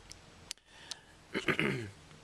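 A single small sharp click about half a second in, then a man clearing his throat near the end.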